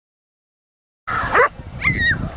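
Silence for about the first second, then a dog barks twice, short sharp barks that fall in pitch.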